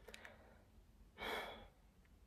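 A woman sighing once: a short breathy exhale a little over a second in.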